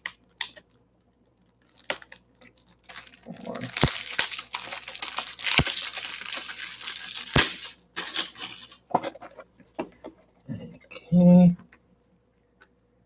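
Plastic packaging crinkling and tearing as a box of BCW toploader card holders is opened, with a few sharp knocks in the middle of the handling.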